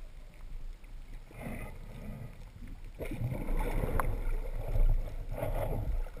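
Muffled underwater water noise picked up by a camera on a speargun as the diver swims, a low rumbling swish that grows louder about halfway through.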